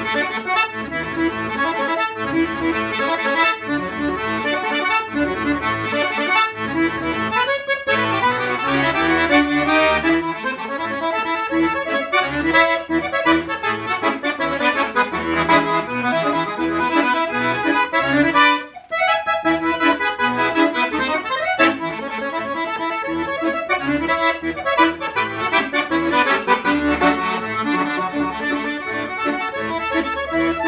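Solo Giulietti F115 piano accordion playing a xote, melody on the right-hand keys over left-hand bass and chords, with a brief break about nineteen seconds in.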